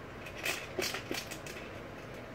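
Light metallic clicks of a wrench and screwdriver working a skateboard truck's mounting bolt and nut as it is tightened, a few scattered clicks.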